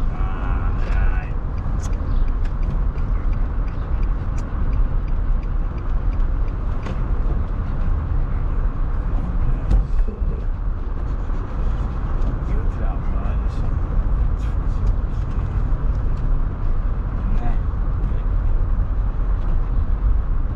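Steady low rumble of road and engine noise inside a moving car's cabin, with scattered small clicks.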